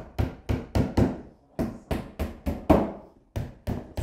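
Claw hammer driving small nails through a thin back panel into the rebate of a chipboard cupboard: quick runs of sharp strikes, about four a second, with brief pauses between runs.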